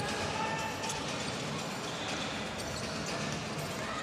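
Basketball being dribbled on a hardwood court under a steady murmur of the arena crowd.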